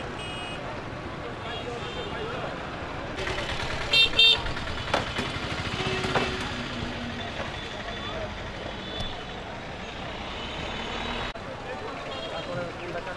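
Busy street traffic with two short vehicle horn honks about four seconds in, the loudest sounds here, over a steady background of traffic and voices.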